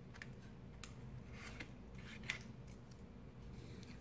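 A handful of faint, light clicks spread over a few seconds as a soft chalk pastel stick is taken out of its plastic tray and handled.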